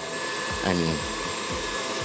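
KitchenAid Heavy Duty stand mixer (model 5KPM5) running with a steady motor whine, its beater working a thick grated-cheese and butter mixture in a steel bowl.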